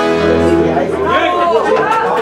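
Button accordion holding a final chord that stops within the first second, then several voices talking and calling out over each other.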